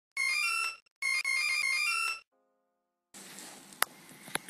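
Short electronic intro jingle: a few synthesized notes in two phrases, a brief one and then a longer one, ending about two seconds in. After a pause, faint room hiss begins, with a single sharp click near the end.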